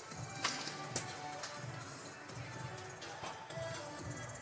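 Background music from the arena sound system, with voices underneath and two sharp clicks about half a second and one second in.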